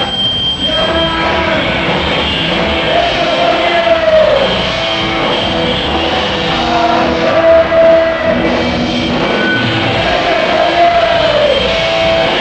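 Punk rock band playing live and loud: distorted electric guitars and drums, with sustained and bending notes.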